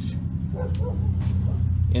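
A steady low mechanical hum, like a running machine or motor, is the loudest sound throughout.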